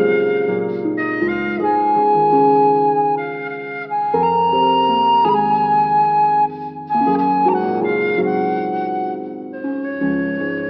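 A danso, the Korean vertical bamboo flute, playing a slow song melody in held notes over an instrumental backing track with a bass line. There is a brief break in the sound about two-thirds of the way through.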